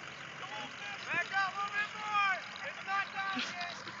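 Unintelligible voices calling out in short, high-pitched phrases, several a second through the middle, with a faint steady engine hum underneath.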